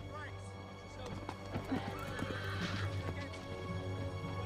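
Horses whinnying and hooves clattering, over a steady orchestral underscore.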